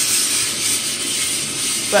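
Gas torch flame burning with a steady hiss.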